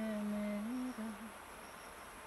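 A person humming a slow tune, holding notes that step up and back down, with the phrase ending a little over a second in.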